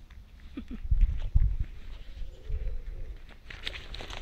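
Footsteps of a person walking on a gravel path, with dull thumps loudest about one and one-and-a-half seconds in. A short faint call sounds just before the first thump.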